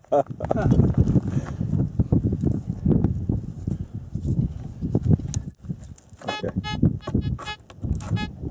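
Gravelly desert soil being scraped and dug by hand with a small tool, rough and crunchy. Near the end, a Fisher Gold Bug metal detector gives a buzzy target tone that pulses about four times a second as its coil sweeps over the dug hole, signalling the buried iron meteorite.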